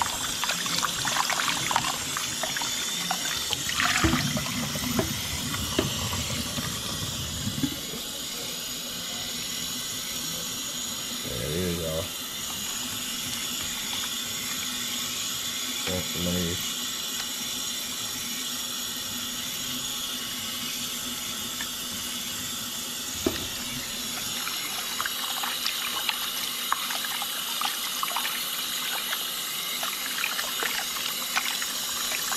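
Kitchen faucet running steadily into a bowl in a stainless steel sink, with water splashing as gloved hands swish and squeeze fish fillets to rinse the blood out. The splashing is busiest in the first several seconds and again near the end.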